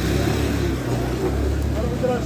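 A steady low engine rumble with background voices.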